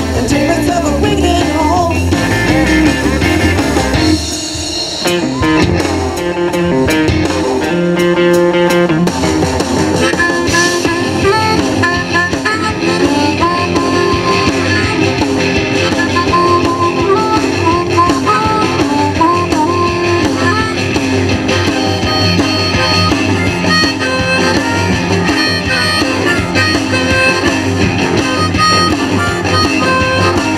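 Live crime-a-billy band playing an instrumental break on electric guitars, bass and drum kit, with a lead line of bending notes from about ten seconds in. The music dips briefly about four seconds in.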